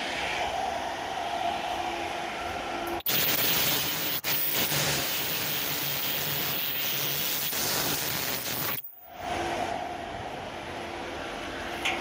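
Ultrasonic welding generator and titanium horn on a mask-making machine switched on about three seconds in: a harsh even noise with a thin, very high-pitched whine, cutting off suddenly after about six seconds. The machine's steady running hum continues under it.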